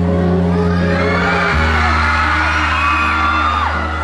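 Loud music through a hall's PA system, with sustained bass notes, and a crowd of fans screaming and whooping over it. The screams swell from about a second in.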